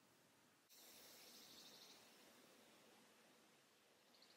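Near silence, with a faint soft hiss about a second in, the sound of a powder blush brush being stroked over the cheek.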